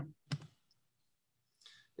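A single short computer mouse click about a third of a second in, opening a web link, on an otherwise near-silent, noise-gated call line.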